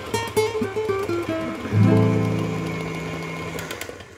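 Acoustic guitar music: a run of plucked notes, then a chord about two seconds in that rings and slowly fades away near the end.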